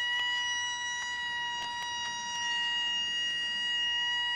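A works hooter sounds one long, steady, high note, signalling the end of the shift.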